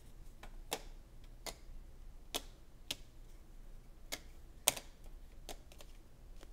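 Thick cardboard game tiles set down one at a time on a tabletop, each giving a sharp click: about seven clicks at an uneven pace, with a few fainter taps between.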